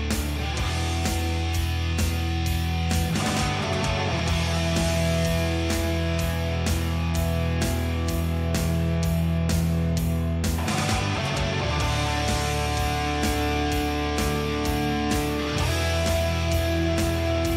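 Instrumental power metal: distorted electric guitars and sustained keyboard chords over bass and a steady drum beat, with no vocals. The chords change about three seconds in and again past the middle.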